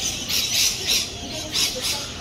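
Laughing kookaburra calling in a run of harsh, squawking notes, about five in quick irregular succession.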